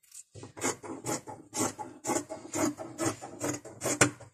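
Tailor's scissors cutting through cloth on a table: a steady run of rasping snips, about two a second.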